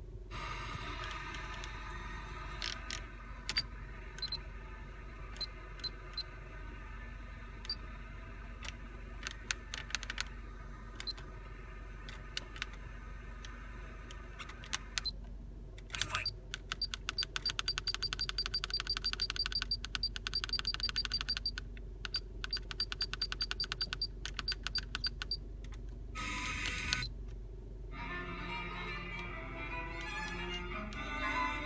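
The rotary knob of a Pioneer car stereo clicks as it is turned, over quiet radio sound from the car's speakers. Scattered single ticks come in the first half. A long fast run of ticks follows in the middle as the knob is spun. Music then comes up louder from the speakers near the end.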